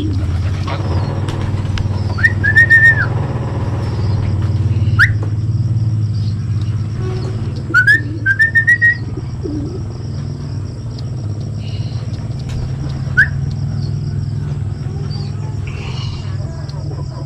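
Several short, high whistled calls, each a quick upward glide into a held note, loud and close, in a few separate groups over a steady low rumble.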